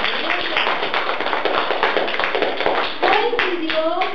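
Applause from a small group of people, a fast irregular patter of hand claps that dies away about three seconds in as a woman starts to speak.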